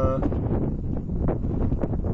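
Wind buffeting the microphone: a loud, uneven low rumble that keeps on after a drawn-out word from a man's voice at the start.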